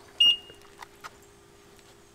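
A single short electronic beep from the BMW 340i, set off by the wash mitt passing over the door handle with the key fob in the washer's pocket, which triggers the car's keyless entry.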